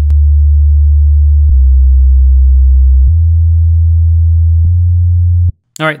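Sub-bass synthesizer playing solo: four long, steady low notes of about a second and a half each, stepping down, then up, then up again. These are the bass notes of a four-chord progression.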